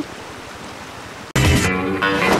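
Steady rush of a shallow creek running over rocks for about the first second, then a sudden cut to loud music.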